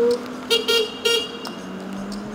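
A vehicle horn: one longer note that cuts off just after the start, then three short beeps within about a second, over a steady low hum.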